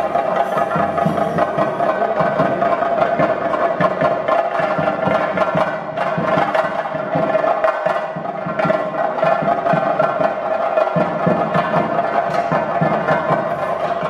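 Ritual drumming for a Theyyam, the fast, dense beats of chenda drums, with a steady held high tone sounding over them throughout.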